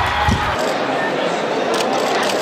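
A loaded barbell with rubber bumper plates thuds on the lifting platform about a quarter second in, a rebound after a larger drop just before. It is followed by the noise of a large competition hall.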